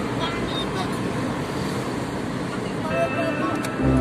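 Steady road and engine noise heard inside a moving car's cabin, with faint voices underneath. Music starts near the end.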